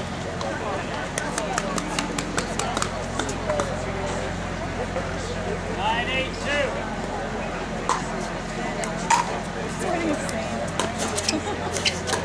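Pickleball paddles hitting a plastic ball, sharp single pops a second or more apart in the second half as a rally starts, over indistinct voices of players and spectators.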